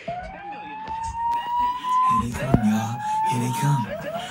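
Kids' TV soundtrack playing from a television: a siren-like tone slides upward for about two seconds, then slides up again, and bass notes join about halfway through.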